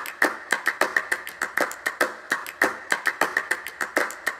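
Opening of a song: a fast, even rhythm of sharp percussive taps or claps, about six a second, with no melody yet.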